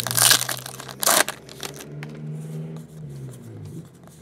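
A foil trading-card pack wrapper being torn open and crinkled by hand: two sharp rips, one at the start and one about a second in, then quieter crinkling.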